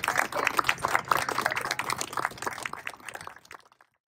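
Applause from a small group of people, the hand claps thinning out and stopping about three and a half seconds in.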